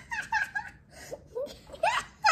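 A young boy laughing in a run of short giggles.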